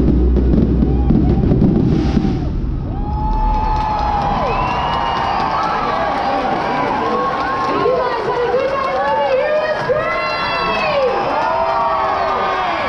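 Fireworks finale: a dense rumble of bursts that stops about two and a half seconds in. The crowd then cheers and shouts.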